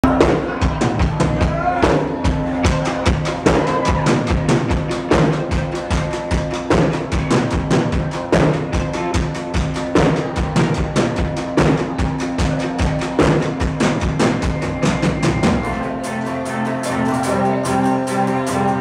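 A live band playing an instrumental intro: a drum kit keeping a steady, fast beat under acoustic guitar and bass. About sixteen seconds in the drums drop out, leaving held chords.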